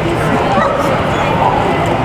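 A dog vocalizing briefly with short high-pitched sounds, about half a second to a second in, over steady chatter of people in a crowded hall.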